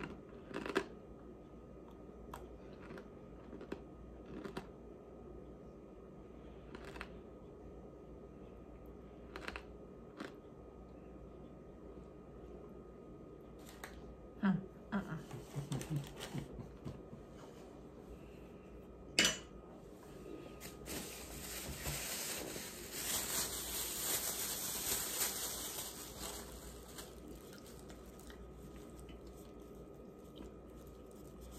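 Mouthfuls of raw tapioca starch being chewed and crunched, with scattered small clicks and one sharper click a little past the middle. This is followed by several seconds of plastic-bag rustling and crinkling.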